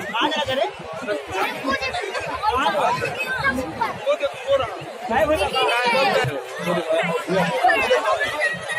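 A crowd chatters, many voices talking over one another at once, with no single speaker standing out.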